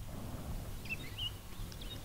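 Outdoor ambience: a steady low rumble with a few faint, short bird chirps about a second in.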